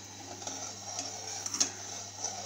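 A metal spoon stirring milky daliya (broken-wheat porridge) in a steel pot on a gas stove, quietly, with a few light scrapes against the pot about one and a half seconds in, over a faint steady hum.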